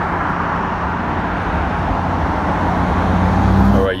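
Steady low hum of a motor vehicle with a rushing noise over it, swelling a little near the end and cutting off abruptly.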